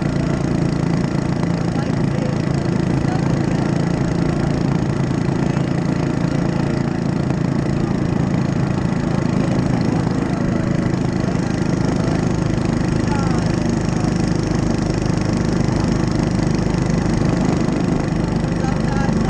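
Mini bike's small engine running steadily under way, its pitch and loudness holding even throughout.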